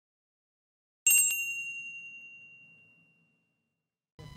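Silence, then a single bright bell-like chime about a second in, a few quick strikes blending into one high ringing tone that fades away over about two seconds.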